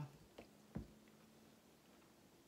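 Near silence: room tone with a faint steady hum, a faint click and a soft low knock just under a second in.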